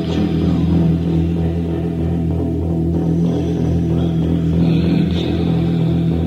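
Gothic rock band's demo recording in an instrumental stretch: a dense, steady low drone from bass and guitars, with no singing.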